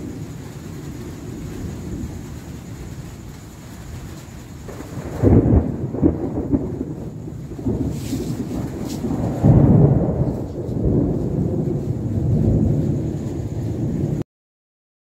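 Thunder rumbling in long, low rolls, growing louder about five seconds in and swelling again near ten seconds and near the end.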